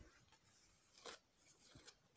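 Near silence, with a few faint short scratches of a line being marked on cotton fabric, one about a second in and a couple more near the end.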